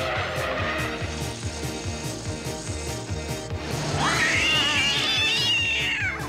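Cartoon background music with a steady beat. About four seconds in, a cat yowls in a long, high, wavering call lasting about two seconds.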